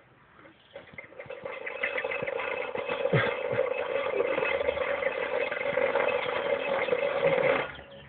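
Small two-stroke engine of a Stihl saw buzzing steadily at high revs. It builds up about a second in and cuts off abruptly near the end.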